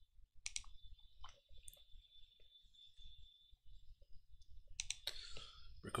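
A few faint clicks at a computer, mouse or keyboard, bunched in the first two seconds, over a faint steady high-pitched tone.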